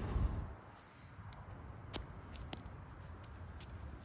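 Quiet background with a soft rustle in the first half-second and two small sharp clicks about two seconds in, half a second apart.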